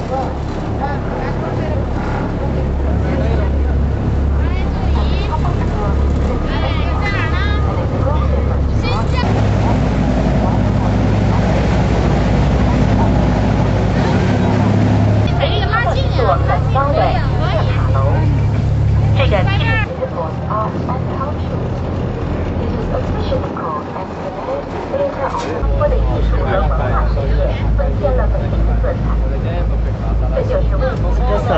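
A steady low engine drone with people's voices over it. The drone changes pitch suddenly a few times.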